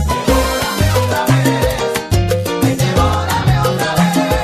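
Salsa music in an instrumental passage without singing: the band plays a steady, driving beat over a repeating bass line.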